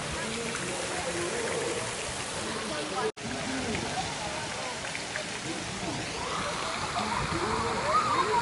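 Water from a children's pool play structure falling and splashing into the pool as a steady rushing noise, with distant voices. The sound cuts out for an instant about three seconds in.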